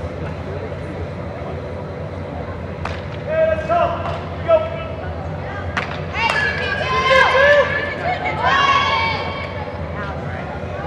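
High-pitched shouted calls from softball players echoing in an indoor sports hall, over a steady background hum. A few sharp smacks, the softball landing in gloves, come about three, four and a half and six seconds in.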